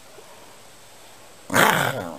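Staffordshire bull terrier letting out one short, loud bark near the end.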